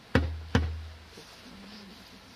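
Two heavy drum beats about half a second apart, each a sharp strike followed by a short low boom.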